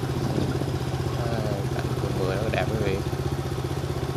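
Motorbike engine running steadily at low speed with a low, even hum.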